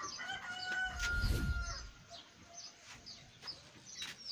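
A rooster crowing once: one long call of about a second and a half, beginning just after the start, with a low rumble under its middle. Small birds chirp faintly in the second half.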